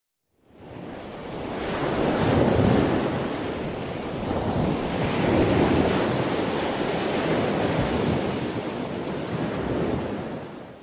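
Ocean surf: a steady wash of breaking waves that fades in at the start and swells louder a couple of times.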